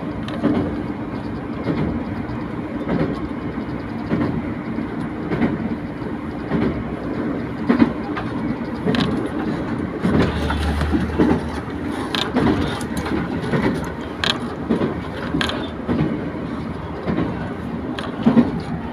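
A JR Hokkaido local diesel railcar running at speed, heard from inside the passenger cabin: a steady rumble of wheels and engine with irregular clacks as the wheels pass over rail joints. A deeper hum swells for a couple of seconds about ten seconds in.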